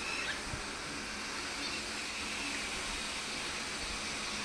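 A steady, even hiss of background noise with no clear engine note or distinct events.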